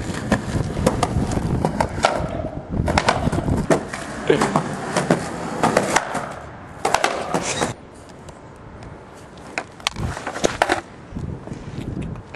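Skateboard wheels rolling on concrete, with repeated sharp clacks and slaps of the board hitting the ground. It gets quieter about two-thirds of the way in, leaving only a few scattered knocks.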